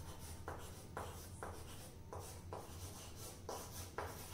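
Chalk scratching on a chalkboard as a line is written by hand: short, faint strokes, roughly two a second, with brief gaps between them.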